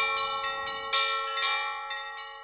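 Bells ringing in a quick run of strikes, several a second, over a steady ringing hum of overtones that grows quieter near the end.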